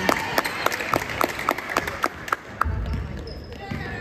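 A basketball being dribbled on a hardwood gym floor: quick, even bounces about four a second that stop about two and a half seconds in, echoing in the gym over background voices.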